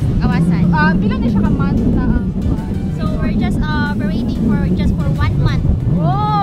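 A woman speaking in conversation, over a steady low rumble.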